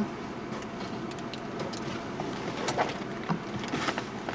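Steady low noise inside a car, with a few soft clicks and rustles of things being handled in the front seat.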